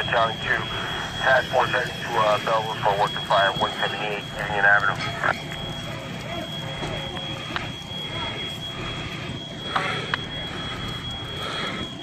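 Fire apparatus engines running steadily, with a constant high-pitched whine throughout. Indistinct voices are heard over it for the first five seconds or so.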